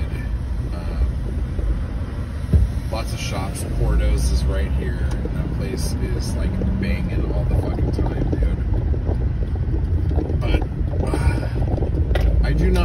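Car engine and road noise heard from inside the moving car's cabin, a steady low rumble that grows louder about four seconds in, with a single sharp knock about two and a half seconds in.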